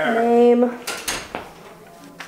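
A person's drawn-out, exasperated groan that slides down in pitch and then holds one note, followed by a few short knocks and taps.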